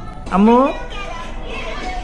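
A short voiced sound, rising in pitch, about a third of a second in, over faint background music.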